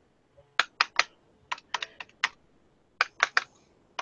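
Edge of a plastic credit card, wet with India ink, tapped down onto paper again and again to print short lines: a run of sharp taps in irregular clusters, about a dozen in all, with a short pause before the last few.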